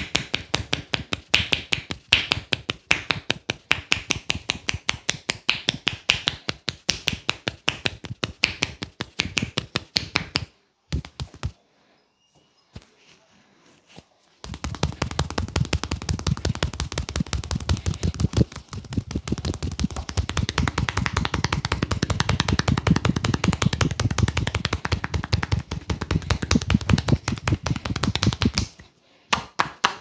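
Percussion massage (tapotement): hands striking a bare back in rapid, fast-repeating slaps and chops, the palms pressed together for part of it. The strikes stop for a few seconds about a third of the way in. They then resume, deeper and thuddier, and break off shortly before the end.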